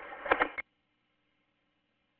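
The tail of a police two-way radio transmission, a voice over a narrow radio channel, cutting off abruptly about half a second in. Near silence follows.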